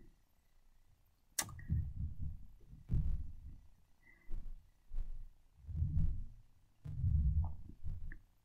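Soft tabletop handling noises from a brush mixing acrylic paint on a plastic palette. There is one sharp click about a second and a half in, then a series of dull low knocks and rubs.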